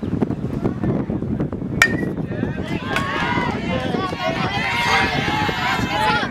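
A bat hitting a pitched ball once, about two seconds in, with a short metallic ping; then spectators and players shouting and cheering, growing louder.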